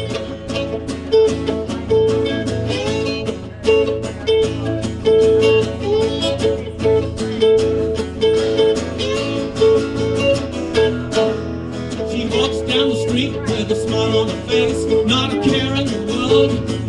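Live band playing an instrumental song intro: strummed acoustic guitar and electric guitars over a steady drum beat.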